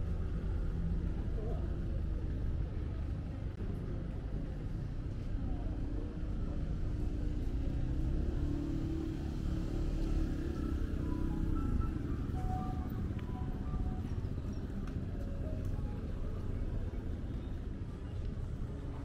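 Busy city street ambience: a steady low rumble of traffic, with music and indistinct voices of passers-by mixed in.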